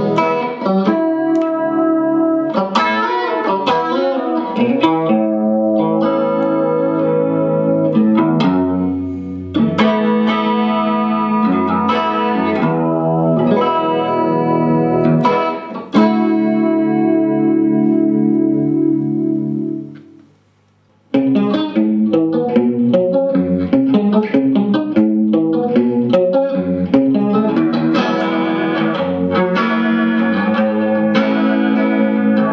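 Suhr Classic electric guitar played through a Carl Martin Classic Chorus pedal into a VHT G50CL Pittbull amp: chords strummed with a chorus effect, one chord held ringing for a few seconds, then about a second of near silence. After the break it resumes with a faster picked chord pattern, at new chorus settings.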